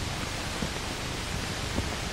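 Steady background hiss of an old film soundtrack, with no other distinct sound.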